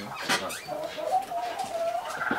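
A bird, likely farmyard fowl, calling in one long, slightly wavering note that starts a little under a second in. It comes after a brief, sharp sound.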